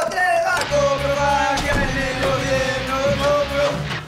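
Amateur punk rock rehearsal: electric guitar and electric bass playing loudly under a sung vocal that holds long notes. The music breaks off at the very end.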